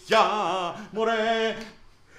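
A man singing two drawn-out phrases with a wavering pitch, a mock shepherd's folk song. The second phrase fades out near the end.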